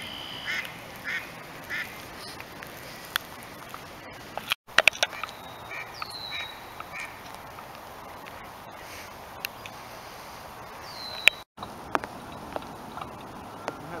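Short bird calls, three in quick succession at the start and a few more midway, with two short falling calls, over a steady hiss of light rain on the lake. A few sharp clicks stand out as the loudest moments.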